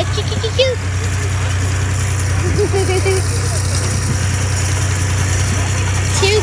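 Steady low drone of the engine pulling the hayride wagon, with faint voices now and then.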